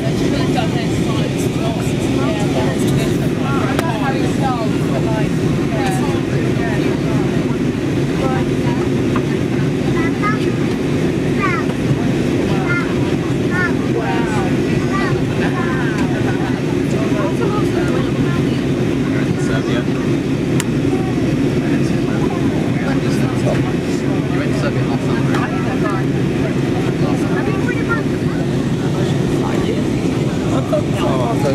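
Steady cabin roar of an easyJet airliner in flight, the even rush of engines and airflow heard from a window seat, with other passengers talking indistinctly in the background.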